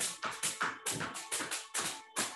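Quick, even hand taps on the hip and groin through clothing, a qigong self-massage tapping, about six taps a second.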